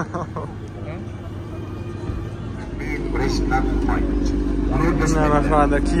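Kia Stinger's engine idling steadily. It becomes audible about two seconds in and grows louder, with men talking over it.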